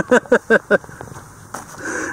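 A person laughing, a quick run of short ha-ha bursts in the first second.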